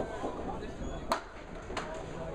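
Candlepin bowling alley sound: a low murmur of voices with two sharp knocks, about a second in and again shortly before the end, the hard clack of candlepin balls and pins.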